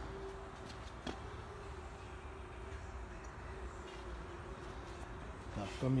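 Steady low hum and room noise with a faint constant tone, and a light click about a second in.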